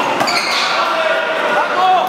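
One-wall handball rally in a large, echoing hall: the small rubber ball slapping off hands, wall and floor, under voices and calls from players and onlookers.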